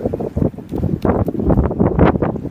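Wind buffeting the microphone in uneven gusts, a rough low rumble that surges and dips.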